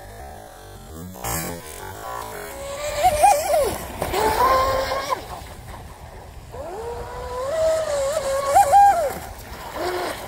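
Electric RC boat motor, a 4,000 kV motor, whining as the throttle is worked: twice the whine rises in pitch, holds, steps higher and then cuts off, with some water splash.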